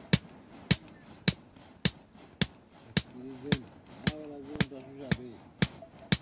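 A Datoga blacksmith's hammer striking metal at a charcoal forge, steady and rhythmic at about two blows a second, each blow with a short high ring.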